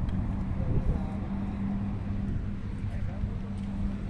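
A steady low hum and rumble, with faint voices in the background.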